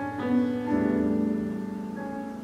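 Classical piano music: chords struck twice in the first second, then left to ring and slowly fade.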